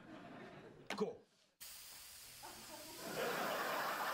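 Aerosol can spraying in a continuous hiss that starts abruptly about a second and a half in. Studio audience laughter swells over it about three seconds in and is the loudest sound.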